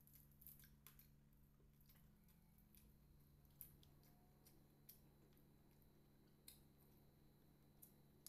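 Faint crisp crackles and clicks of crunchy fried chicken being torn apart with the fingers, a few sharper snaps standing out, the loudest about three and a half seconds in, over a low steady hum.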